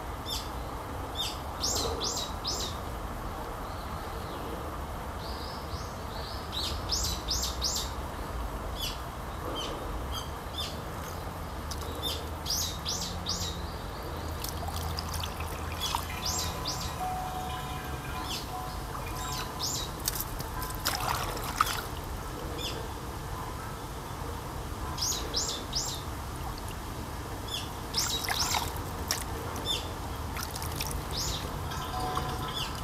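Small birds calling in the trees: short bursts of three or four high chirps, repeated every few seconds, over a faint trickle of water.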